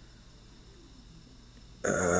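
Faint steady room hiss. Near the end a man's voice starts abruptly with a low, held vocal sound.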